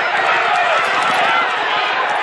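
Loud, continuous voices shouting and talking over one another, with crowd noise.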